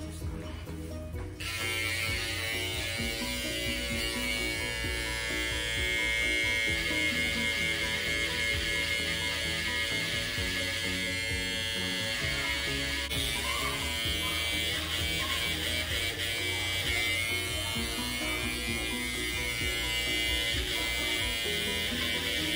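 Corded electric hair clippers buzzing steadily as they trim short hair, starting suddenly about a second in. Music plays in the background.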